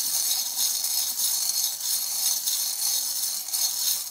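A pile of small metal charms jingling and clattering steadily as a hand stirs and shakes through them in a glass dish. The jingle stops abruptly just at the end.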